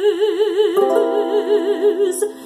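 A woman singing one long held note in a classical style with wide, even vibrato. A sustained accompaniment chord comes in under the voice a little under a second in.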